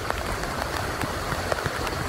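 Steady rain falling on wet pavement and a parked motorcycle, with a few sharp ticks of single drops striking close by.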